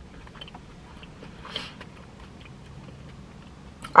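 Soft chewing of a bite of fried peach mango pie with the mouth closed, with one brief louder sound about a second and a half in.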